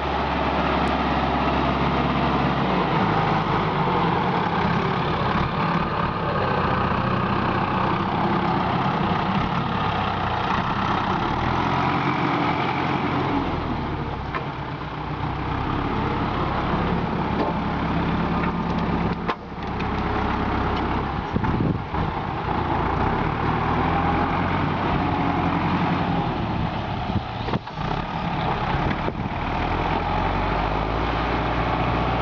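Fendt Farmer 309 LSA tractor's four-cylinder diesel engine running steadily under load while pulling a reversible plough through the soil, with a brief dip in level about halfway through and a couple of short drops later on.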